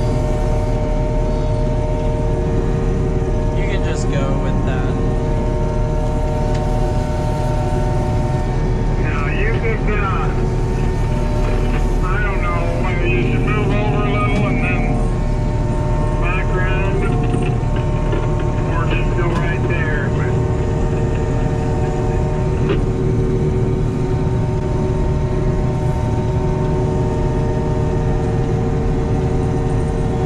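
John Deere 5830 self-propelled forage harvester running steadily while chopping corn, heard from inside its cab: a constant engine drone with several steady whining tones over it. A voice is heard in the middle.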